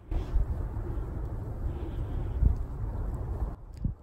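Wind rumbling on the microphone in open parkland at night: a low steady rumble with a brief louder gust about halfway through.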